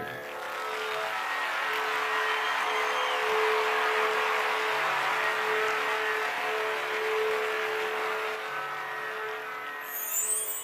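Projection-show soundtrack: a long rushing swell that builds and then fades away, over a steady held drone note.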